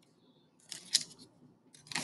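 A paper page of a picture book being turned by hand: a short rustle just under a second in, then more rustling near the end.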